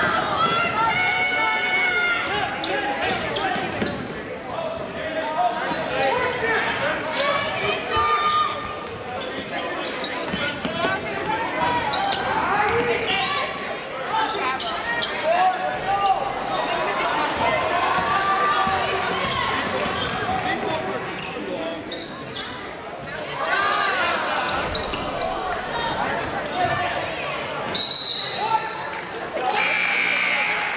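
Live basketball game in a gym: the ball bouncing on the hardwood court and shouting voices, echoing in the large hall. A short high whistle sounds near the end as play stops.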